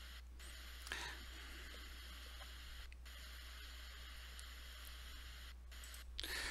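Heavy rain heard faintly through a phone video played back on a computer: a steady, thin hiss with little low end, over a low electrical hum.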